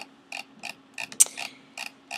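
About six light, irregularly spaced clicks from a computer input device as a document is scrolled, one louder click a little past the middle, over a faint steady hum.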